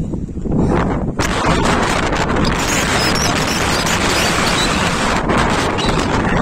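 Strong wind buffeting the phone's microphone: a low rumble that about a second in swells into a loud, steady rushing hiss.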